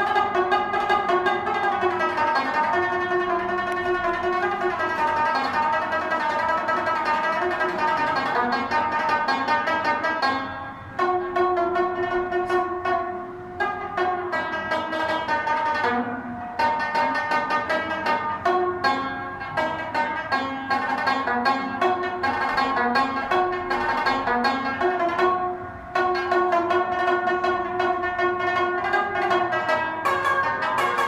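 Rabab, the Pashtun short-necked lute, played solo: a quick plucked melody with its notes ringing on, broken by a few brief pauses between phrases.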